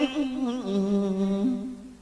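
A voice holds a long low note in a Khmer song, stepping slightly in pitch, then fades out near the end as the track closes.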